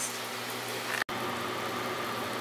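Steady background hiss and low hum of a working kitchen, with no speech. The sound drops out for an instant about a second in at an edit cut, then the same steady noise continues.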